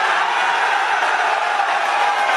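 A crowd cheering and shouting steadily after a speaker's punchline, many voices blending together.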